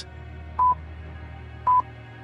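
Countdown timer beeping: short high beeps of one pitch, about once a second, over a faint low steady hum.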